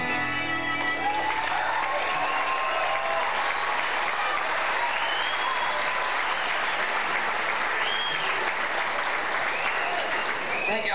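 A bluegrass band's closing chord on guitars, mandolin, fiddle and upright bass rings out for about a second. Then an audience applauds and cheers steadily.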